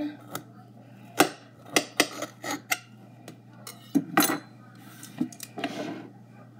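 Butter knife cutting through a green bell pepper and clicking against the plate underneath: about a dozen irregular sharp taps and knocks.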